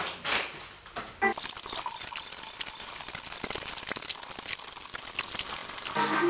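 Plastic cling wrap being pulled off a large roll and stretched around a body, a dense crackling, squeaky rasp that starts about a second in and runs on unevenly.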